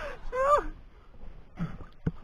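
A man's voice making a short wordless call that rises and then falls in pitch, about half a second in.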